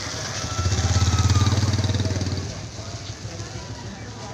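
A motorcycle engine passing close by. It grows loud about half a second in, peaks, and fades after about two and a half seconds.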